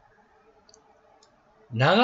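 Two faint short clicks over a faint steady hum during a pause in speech. Speech resumes near the end.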